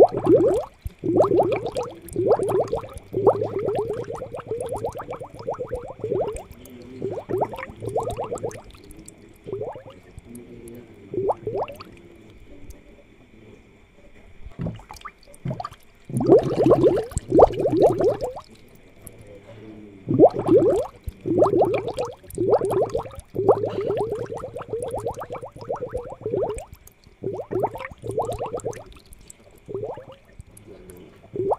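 Air bubbles from an aquarium air line bubbling up through the tank water, in irregular bursts of quick pops a second or two long with short lulls between.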